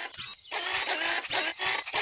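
Cartoon gadget sound effect: a quick run of short mechanical whirring pulses as the small radar scanner on a puppy's backpack turns and scans.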